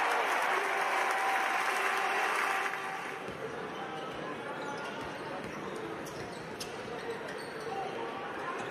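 Basketball arena game sound: crowd noise, loud for the first couple of seconds and then quieter, with a ball bouncing and sneakers squeaking on the hardwood court.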